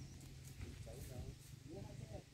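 Faint, distant voices of people talking, over a low rumble from the handheld phone microphone.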